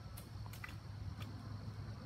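Quiet woodland background: a low steady hum with a few faint clicks in the first second or so.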